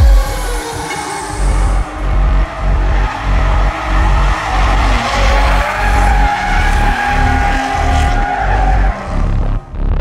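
BMW 3 Series drift cars sliding sideways, tyres squealing and engines revving, under loud electronic music with a heavy pulsing beat.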